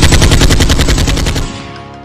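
A loud, rapid rattle of sharp bangs, about fifteen a second, like machine-gun fire, fading out about a second and a half in.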